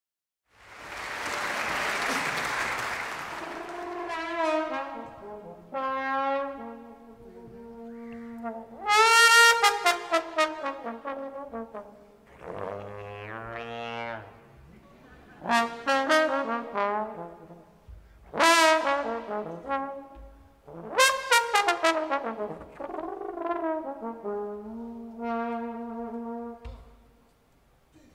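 Unaccompanied jazz trombone solo played in separate phrases with short pauses between them. Several phrases end in slide glissandi falling away in pitch. It is preceded by a few seconds of audience applause at the start.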